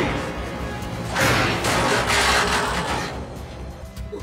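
Cartoon soundtrack: a thud of a landing at the start, then music with a loud rush of noise from about one to three seconds in.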